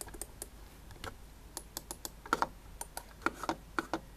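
Irregular small plastic clicks and taps from a hand working a Logitech TrackMan Portable trackball, with quick pairs of clicks about two seconds in and a cluster near the end.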